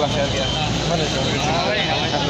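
Busy street-market din: several voices talking at once over the steady noise of traffic.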